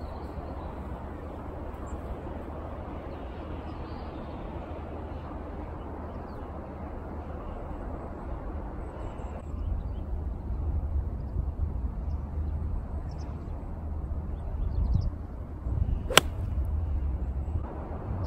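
An 8-iron striking a golf ball once near the end: a single sharp click, over steady low background noise.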